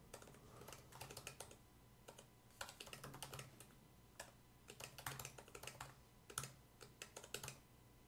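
Faint typing on a computer keyboard, the keystrokes coming in quick runs separated by short pauses.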